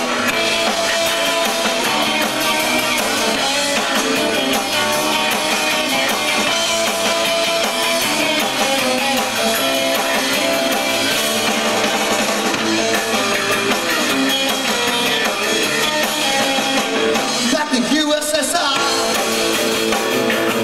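Rock band playing live: electric guitar over bass guitar and drum kit, continuous and loud, with little low end.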